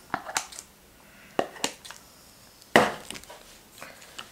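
Scissors snipping shreds of melt-and-pour soap 'grass', a few short sharp snips, with a louder clatter about three seconds in.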